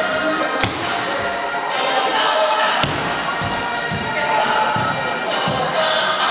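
Two sharp slaps, the first about half a second in and the second near the middle, then several dull thuds on the floor, over steady background music and voices: the strikes and stamps of a kung fu routine.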